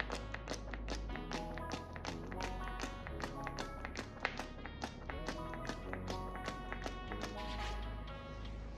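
Background music: a quick run of plucked notes over a steady beat.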